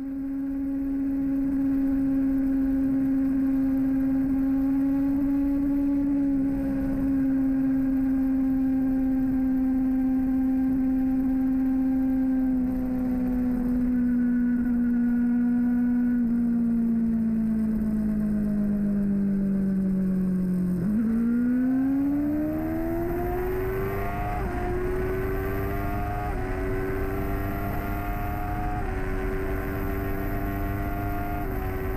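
Motorcycle engine heard from on the bike: a steady cruising note that slowly drops in pitch as the bike eases off, then, about two-thirds of the way through, a hard acceleration with the pitch climbing and dipping briefly at each upshift, about four times.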